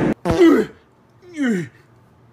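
A person laughing: a rough, throat-clearing burst, then two short laughs, each falling in pitch.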